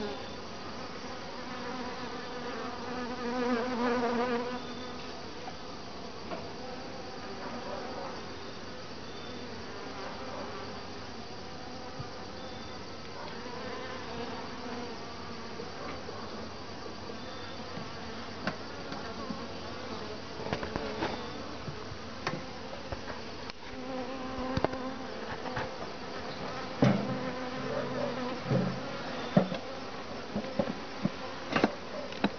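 Honeybees buzzing steadily around an open top-bar hive, one flying close by with a louder buzz about three to four seconds in. Near the end, sharp wooden knocks as top bars are set back into place.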